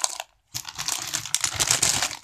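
Plastic snack packets crinkling as they are grabbed and moved by hand, with a short break about half a second in.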